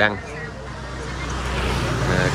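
Motor scooter riding toward the microphone along a paved lane, its engine and tyre noise growing steadily louder as it nears.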